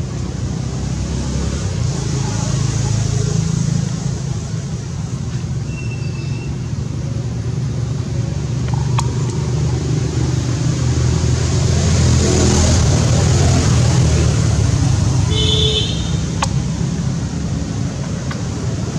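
Steady low rumble of outdoor background noise, like distant traffic. A brief high squeak comes about six seconds in, and a short high-pitched toot or call about fifteen seconds in.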